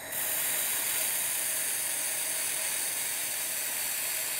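IPG LightWELD XR1500 handheld laser welder running a fillet weld on steel plate at full 1500 W power with 0.045 in filler wire: a steady high hiss that starts just after the beginning and holds even.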